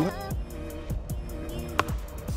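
Background music with a steady beat, and near the end a single sharp crack of a plastic wiffle ball bat hitting the ball.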